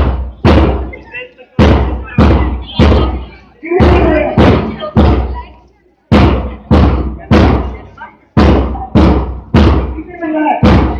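A drum beaten in a steady marching beat, loud, about two strikes a second with short gaps between runs of strikes. A voice is heard briefly between the beats about four seconds in.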